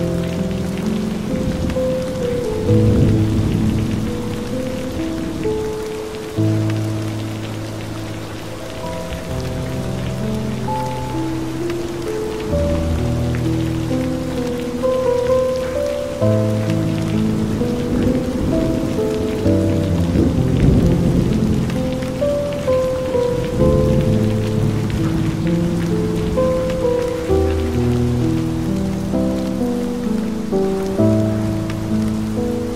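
Steady rain falling, mixed with slow, calm ambient music tuned to 432 Hz: low held notes and chords that change every second or two. Low rumbles of thunder come in near the start and again about two-thirds of the way through.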